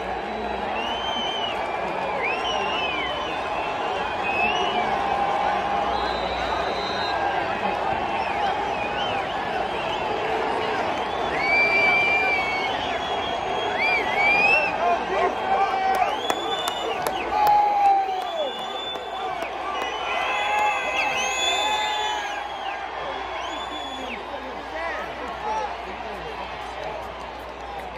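Large football stadium crowd yelling and cheering, many voices at once with scattered shrill whoops and screams, swelling to its loudest in the middle and easing toward the end.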